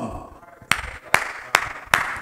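A man clapping his hands four times at an even pace, about 0.4 s between claps, starting just under a second in.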